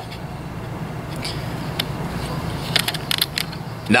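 Small metal clicks and scrapes of pliers prying open the wire loop of a mousetrap's snap lever: a handful of light ticks, bunched near the end, over a steady low hum.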